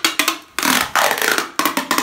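Brown packing tape being pulled off its roll and laid across a cardboard box, a loud rasping screech in a few pulls, the longest about a second.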